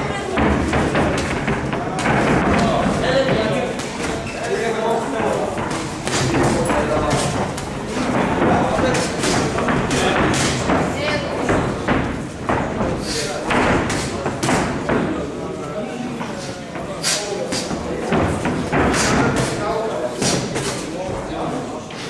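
Boxing gloves thudding as punches land, a run of short sharp thuds that come more often in the second half, over voices from around the ring.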